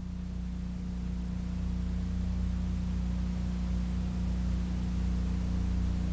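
A steady low hum with an even hiss over it, slowly growing a little louder, with no separate events.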